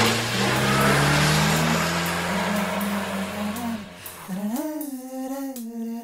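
Open-top jeep's engine running under a loud rush of road noise, its low tone slowly rising as it speeds up. About four seconds in, a singing voice holding long notes begins as the music comes in.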